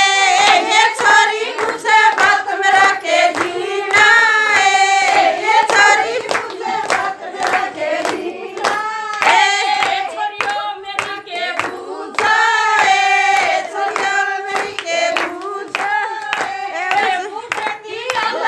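Group of women singing a Haryanvi folk song together, with rhythmic hand clapping keeping the beat.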